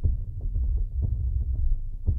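A low, throbbing hum sitting deep in the bass, with faint irregular pulses and no clear tune.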